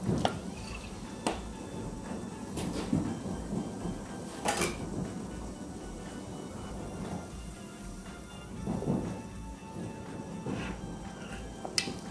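Soft background music with a few sharp knocks of a wooden spoon against a stainless-steel pot as boiling soup is stirred, the loudest knock about four and a half seconds in.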